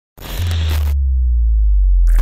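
Synthesized intro sound design: a burst of glitchy static over a deep bass tone. The static cuts off suddenly about a second in, leaving the bass with a faint falling tone.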